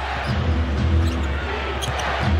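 Basketball dribbled on a hardwood court, over steady arena crowd noise.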